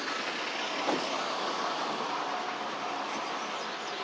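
Steady outdoor background noise of road traffic, with a faint click about a second in.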